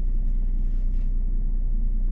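Steady low rumble inside a car's cabin, typical of the engine idling while the car stands still.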